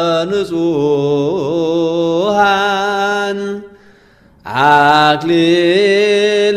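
Ethiopian Orthodox liturgical chant: male voices chanting a mahlet in long held notes with bending, ornamented turns of the melody. The chant breaks off about three and a half seconds in for under a second, then resumes.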